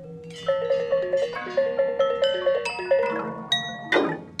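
Balinese gamelan bronze metallophones struck with mallets in a quick run of ringing notes, several a second, over a low steady hum. A few sharper, brighter strikes ring out near the end.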